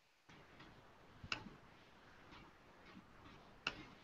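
Faint room noise from a video-call microphone that switches on about a quarter of a second in, with two sharp clicks about two and a half seconds apart.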